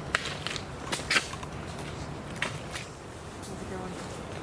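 Footsteps through a mangrove thicket, with dry twigs and leaf litter crackling and snapping: about six sharp cracks in the first three seconds, then quieter.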